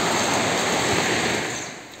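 Shallow stream running over rocks and riffles: a steady rush of water that fades away near the end.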